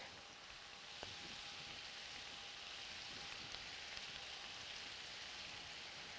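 Cabbage, onion and carrots frying in bacon drippings in a pan: a steady, faint sizzle.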